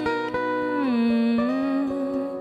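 Acoustic guitar played fingerstyle, a run of plucked notes in an instrumental passage, with a sustained tone that slides down and then back up about halfway through.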